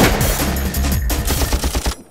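Rapid machine-gun fire sound effects over music, opening on a loud hit and stopping abruptly at the end.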